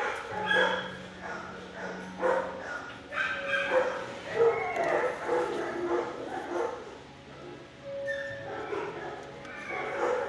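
Shelter dogs barking and yipping from the kennels, many short calls overlapping throughout, easing off briefly a few seconds before the end.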